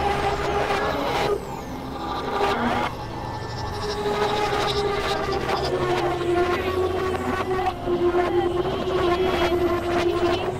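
Experimental electronic synthesizer drones: a sustained mid-pitched tone that steps lower about six seconds in, over a low hum, with scattered clicks and noisy crackle throughout.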